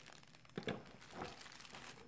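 Faint crinkling of a clear plastic bag as the bagged magnetic base of a dial indicator set is handled, in a few short irregular rustles.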